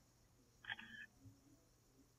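A faint, short camera-shutter sound from the drone controller's app as a photo is taken, lasting under half a second about two-thirds of a second in; otherwise near silence.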